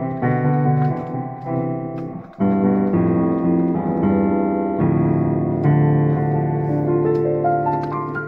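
Solo piano playing an improvisation in D minor: sustained chords and arpeggiated figures. The sound dips briefly about two and a half seconds in before a loud new chord, and a rising run of single notes climbs near the end.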